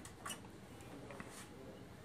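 A few faint, short clicks over quiet room tone.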